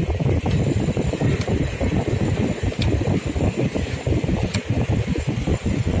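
Steady low rumbling noise with a few faint clicks spread through it.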